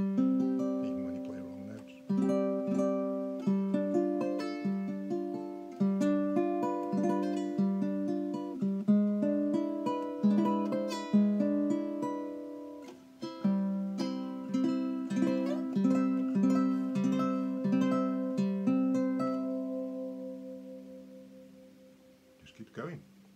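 Tenor/baritone ukulele with a bog oak back and sides, a spruce top and an 18-inch scale, played as a run of plucked notes and chords, freshly finished and not yet played in. A last chord rings and fades away near the end.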